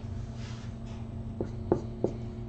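A marker being set down and writing on a board: a soft rub, then a few sharp taps as its tip touches the surface, over a steady low hum.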